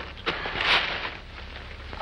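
Tissue and wrapping paper rustling and crinkling as it is pulled out of a cardboard box, with a few sharp crackles and a longer rustle about half a second in.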